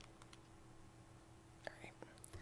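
Near silence: room tone with a faint steady hum, and a couple of faint clicks near the end.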